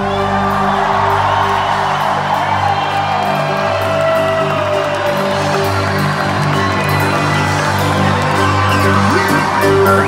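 Live pop band with drums, keyboards and electric guitar playing an instrumental passage over a repeating low riff, with an arena crowd cheering and whooping over the music.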